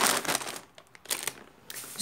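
Plastic grocery packaging crinkling as it is handled: a pasta bag and a clear produce bag rustled by hand. The crinkles are strongest in the first half second, with a shorter rustle about a second in.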